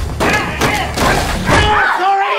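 A scuffle: repeated heavy thuds and bumps of bodies struggling, with people yelling and screaming over it.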